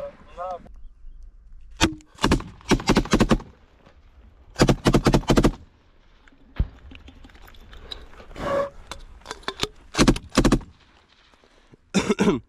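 Rifle fire in rapid bursts at close range: a single shot about two seconds in, then bursts of several shots at about two to three seconds, around five seconds and again around ten seconds, with scattered single shots between.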